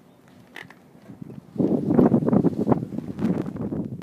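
Basset hound sniffing and snuffling at the grass with her nose close to the microphone, a loud run of quick irregular sniffs starting about a second and a half in.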